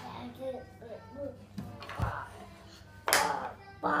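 Voices over background music, with a single soft knock about two seconds in.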